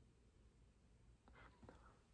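Near silence: room tone, with a faint soft sound near the end.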